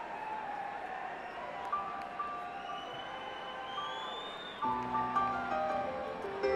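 Live piano interlude beginning over audience noise: a few sparse high piano notes from about two seconds in, then a fuller chord with lower notes near the end, with scattered whistles from the crowd.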